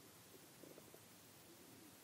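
Near silence: room tone, with a faint, brief low sound a little over half a second in.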